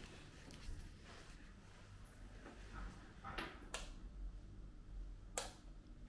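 Quiet room with a few short clicks, the sharpest about five seconds in: a wall light switch being pressed to turn on the kitchen light.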